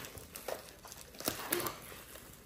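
A few light clicks and taps of small pieces and packaging being handled while a gingerbread house kit is put together, with a brief faint voice sound a little after halfway.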